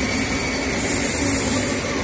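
Steady drone of machinery running, an even rushing noise with a constant low hum through it.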